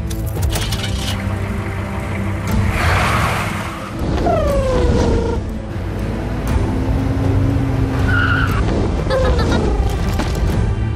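Car engine running, with tires squealing in falling glides a little after four seconds as the car speeds off, under background music.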